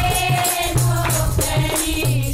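A group of women singing a Haryanvi folk song (lokgeet) together, one long held note in the melody, over rhythmic jingling percussion.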